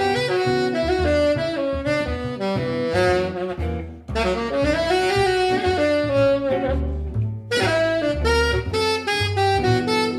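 Saxophone improvising a jazz line over double bass and guitar accompaniment. The melody breaks off briefly about four seconds in and again about seven and a half seconds in.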